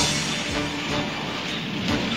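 Cartoon soundtrack music with a rushing, whooshing sound effect of the shark-shaped craft speeding over the water, starting abruptly at the cut.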